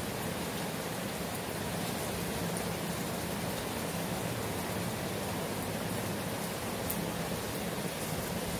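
A steady, even hiss with a faint low hum underneath and no distinct events.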